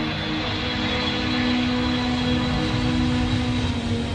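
Airplane engine running steadily, an even rushing noise, with music underneath.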